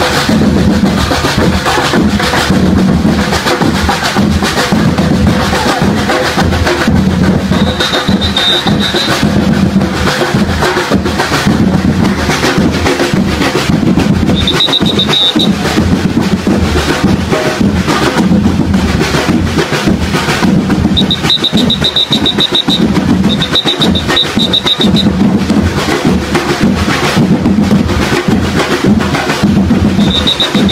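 Loud, steady drum-driven percussion music with rolls and bass-drum strokes, accompanying a festival street dance. Several times a shrill trilling whistle cuts through, a short blast about a third of the way in and two longer ones in quick succession later on.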